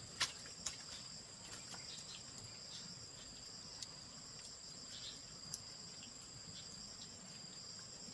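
Steady, high-pitched drone of insects, with a few sharp clicks scattered through it, the loudest just after the start.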